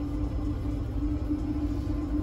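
Steady machine hum: one constant mid-pitched tone over an even low rumble, without change.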